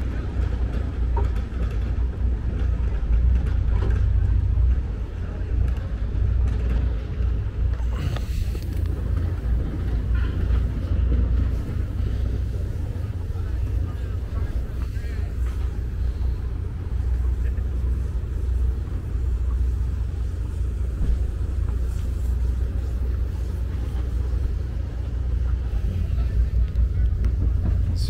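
A steady low rumble of harbor background noise, with no clear single event.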